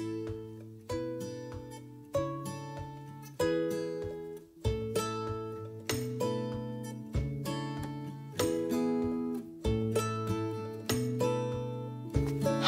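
Background music of strummed acoustic guitar chords, one struck about every second and a quarter, each ringing out and fading before the next.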